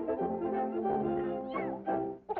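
Brass-led cartoon score music playing sustained chords. Near the end a short high gliding squeal cuts in over it.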